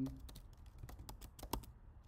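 Computer keyboard keys clicking as a command is typed: a quick, irregular run of keystrokes.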